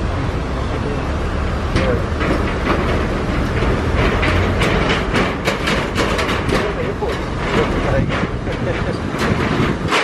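A vehicle driving across a steel bridge: a steady rumble with irregular rattles and knocks from the vehicle and the bridge deck.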